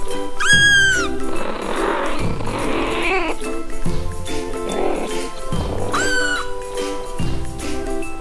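Background music, with a kitten meowing twice: a short rising-and-falling call about half a second in and another about six seconds in.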